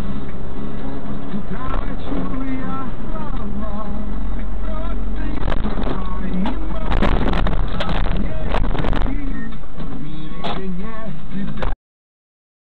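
Steady engine and road rumble inside a moving car, picked up by a dash cam, with a run of sharp knocks from about five to nine seconds in and one more near the end. The sound cuts off abruptly just before the end.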